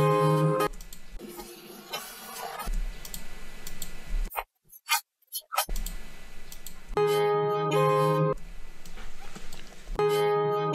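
Guitar recording played back in layers. A ringing strummed chord is followed by a few seconds of the separated noise layer alone: thin hiss with short low rumbles and a brief dropout. About seven seconds in, the full guitar chords return.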